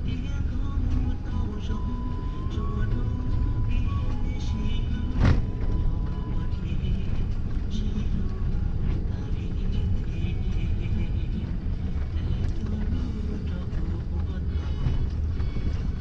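A vehicle driving along a rough dirt road, heard from inside the cab: a steady low rumble with small rattles, and one sharp knock about five seconds in. Music plays along with it.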